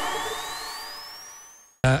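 The tail of a radio station's ident jingle fading out, with a thin tone sliding steadily upward in pitch as the music dies away. It ends in a moment of silence just before the end.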